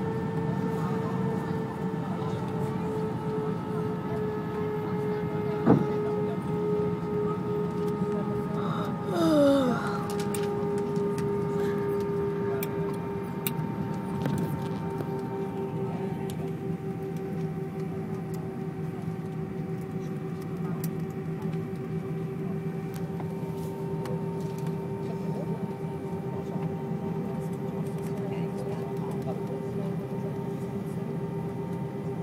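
Airbus airliner's jet engines whining steadily at low power over a low cabin rumble while the plane taxis, heard from inside the cabin over the wing. A single sharp click comes about six seconds in, and a short falling squeak a few seconds later.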